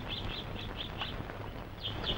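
Small birds chirping: a quick run of short, high chirps, about five a second, then a brief pause and a few more near the end, over a faint hiss.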